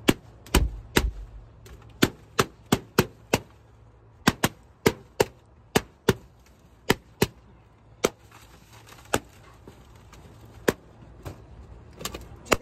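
Latex party balloons popped one after another: about eighteen sharp pops, several a second at first, spreading further apart in the last few seconds.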